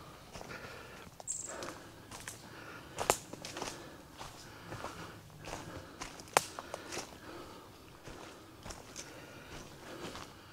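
Footsteps crunching through dry leaf litter and twigs on a forest floor: an irregular crackle of steps, with two sharper cracks about three and six seconds in.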